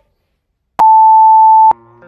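A single loud, steady electronic beep lasting about a second from a workout interval timer, marking the start of an exercise set. Guitar background music starts as the beep ends.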